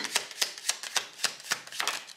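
A deck of oracle cards being shuffled by hand: a quick, irregular run of soft card slaps and clicks, several a second.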